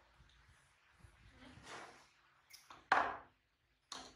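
A plastic feeding bottle knocking against and falling over onto a wooden tabletop: a few light clicks, then one sudden loud clatter about three seconds in, with another sharp knock at the end.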